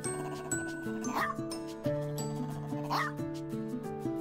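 An old small white spitz-type dog gives two short, high yips, each rising in pitch, just under two seconds apart, over background music.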